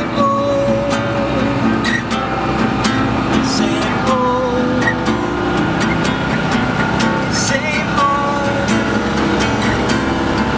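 Acoustic guitar music played inside a moving Citroën 2CV, over the low, steady running and road noise of its small air-cooled flat-twin engine. A held, wavering melody note comes in three times, about four seconds apart.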